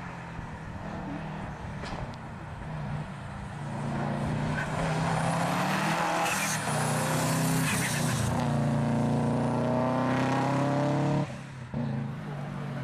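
Rally car engine revving hard through a tyre chicane, getting louder as it approaches and passes close by, its pitch repeatedly climbing under acceleration and dropping at gear changes. The sound cuts off suddenly near the end.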